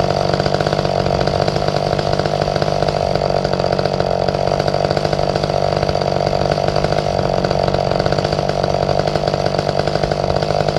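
McCulloch Pro Mac 1010 two-stroke chainsaw idling steadily, with no revving.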